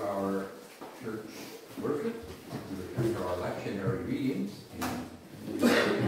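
Speech: people reading aloud in a hall, with the words not made out.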